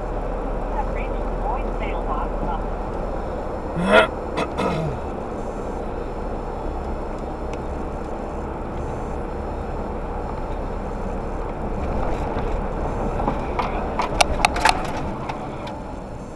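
Steady road and engine noise heard from inside a vehicle cruising on a highway. About four seconds in, a short rising voice is heard, and a few sharp clicks come near the end.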